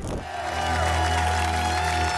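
Traditional Romanian folk band music starting after an abrupt cut: one long held melody note over a low, steady accompaniment.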